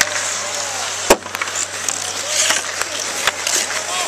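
Ice hockey skates scraping and carving on outdoor ice, with a sharp crack of a stick hitting the puck about a second in and a few lighter stick clicks after it.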